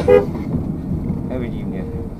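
Dashcam audio from inside a moving car: steady road and engine rumble, with a short horn toot right at the start that is the loudest sound.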